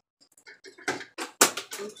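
A spatula scraping and knocking against a glass mixing bowl tipped over a metal loaf pan while batter is scraped out: a quick series of short clicks and scrapes, the sharpest about a second and a half in.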